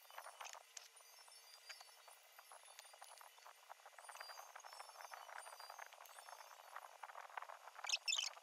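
Near silence with a faint, dense crackling that thickens after about three and a half seconds: the crinkle and rustle of thin plastic gloves as the hands handle the flower parts.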